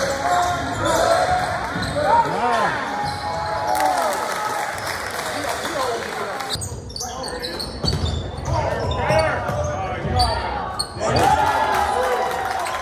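Live sound of a basketball game on a hardwood gym floor: sneakers squeaking in many short chirps and a ball bouncing, over spectators' voices. The sound shifts abruptly about six and a half seconds in.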